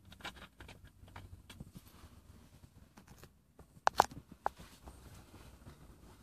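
A clear plastic water bottle being handled and its screw cap twisted open: a run of faint crinkles and small clicks, with a few sharp, louder clicks about four seconds in.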